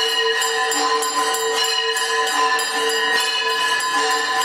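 Temple aarti music: metal bells struck in a quick, steady beat, about three to four strikes a second, over a sustained held tone.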